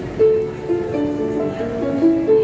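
Upright piano being played: a line of clear single notes in the middle register over sustained notes beneath, with the strongest note struck about a fifth of a second in and another right at the end.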